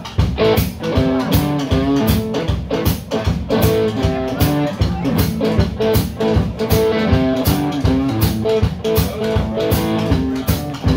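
Live band playing: electric guitar notes over electric bass and a drum kit keeping a steady beat.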